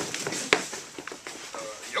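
Quiet voices with one sharp smack about half a second in, the loudest sound.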